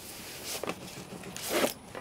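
Cardboard packaging sleeve being slid off a cardboard box: a papery scraping rub, with two louder swishes, about half a second in and again about a second and a half in.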